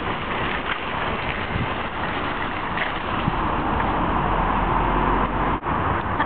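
Metal shopping trolley being pushed across wet car-park tarmac, its wheels and wire basket giving a steady rolling rattle. The noise breaks off abruptly near the end.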